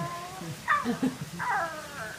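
A person's high voice giving meow-like "ow" cries in imitation of an animal, each sliding down in pitch. One cry trails off early on and two more follow about half a second apart.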